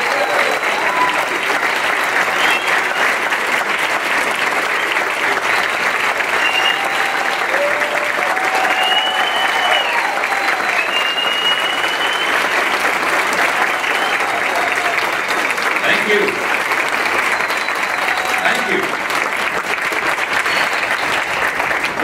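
Audience clapping steadily in a standing ovation, an even wash of applause that holds throughout and dies away near the end.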